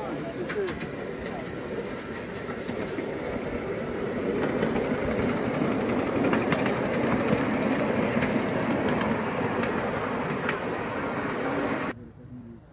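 A ridable miniature live-steam tank locomotive, with a driver riding behind it, running along the track past the listener. It grows louder as it comes near, with scattered clicks from the running gear and rails, and is loudest about halfway through.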